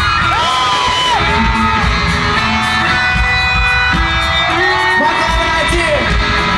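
Live rock band playing loudly in an arena: electric guitars and drums with a voice singing, heard from within the crowd, with cheers and whoops from the audience.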